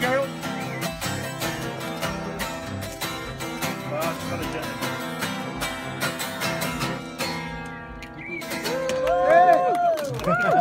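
Acoustic guitars strumming the last bars of a blues-rock song, with a harmonica and a sung final word, until the playing dies away about seven seconds in. Near the end, loud voices call out and whoop.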